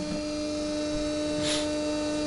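Home-built pulse motor-generator running under a 3-watt load, its 24-pole rotor spinning at about 1500 RPM with a steady hum.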